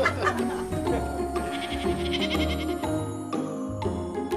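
Background music with a sheep bleating over it, a wavering call about halfway through.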